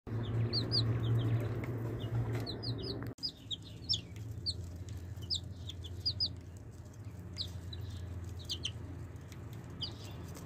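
Baby chicks peeping: short, high, falling peeps, often in quick pairs, repeated throughout. Under them runs a low steady hum, louder for the first three seconds and then dropping abruptly.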